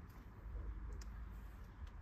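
Quiet background with a faint low rumble and a few faint, short clicks.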